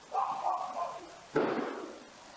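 Two sudden loud bangs about a second and a quarter apart, each trailing off, picked up by a home surveillance camera's microphone. A forensic audio expert identifies them as gunshots that sound as if they were fired inside a house.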